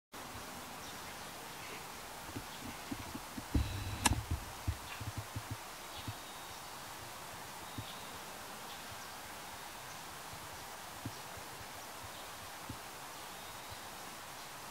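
Quiet outdoor ambience with a steady faint hiss. A cluster of soft low thumps and one sharp click come about two to five seconds in, with a few lone thumps later. Now and then there are faint, very short high peeps from newly hatched eastern spot-billed duck ducklings.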